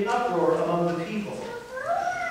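A man's voice chanting scripture on held pitches, with a rising slide near the end.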